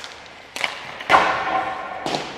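Ice hockey shot: a stick cracks a puck with a sharp click, then about half a second later a louder impact rings through the arena as the puck strikes the goalie or the boards.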